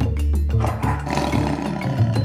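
A big cat's roar sound effect, starting about half a second in and lasting about a second, laid over background music.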